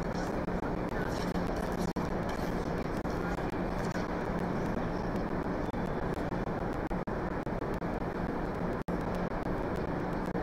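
Steady rumbling background noise of an ice arena, with no music, broken by a few very brief dropouts, the deepest near the end.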